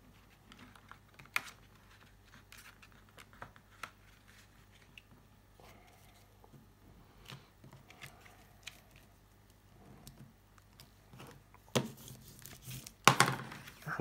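Paper and card rustling and sliding softly as a printed paper panel is tucked into a card pocket, with scattered light clicks of handling. There are louder paper rustles near the end.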